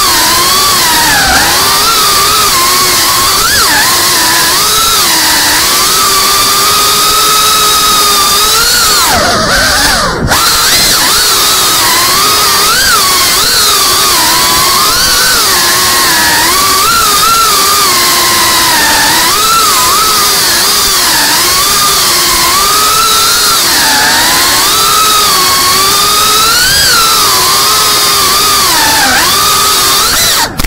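FPV quadcopter's brushless motors and propellers whining, the pitch rising and falling as the throttle changes. About ten seconds in the pitch falls sharply, with a brief dropout, then climbs back.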